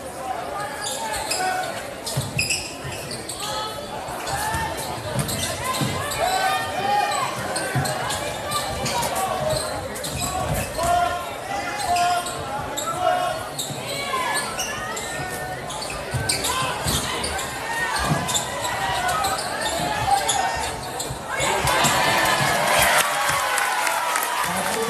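Basketball being dribbled and bouncing on a hardwood gym floor, with players and spectators calling out in a large echoing hall. Near the end the crowd noise swells into cheering.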